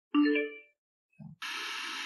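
Softy SBS-10 Bluetooth speaker's power-on chime, a single short ding that fades within about half a second. About a second later the speaker comes up in FM mode and a steady hiss of untuned radio static starts.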